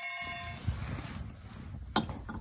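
A held music chord dies away in the first half-second. After it comes uneven, low wind rumble on the microphone, with a single sharp click near the end.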